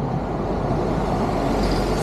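Steady outdoor background rumble and hiss, like road traffic, with no single sound standing out.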